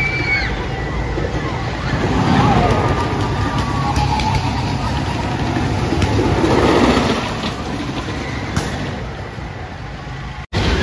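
White Lightning wooden roller coaster's train rumbling along its wooden track, swelling twice as it passes. People's voices are heard over it.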